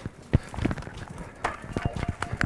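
Footsteps of cleated cycling shoes on hard dirt and gravel: a few irregular clacks and scuffs.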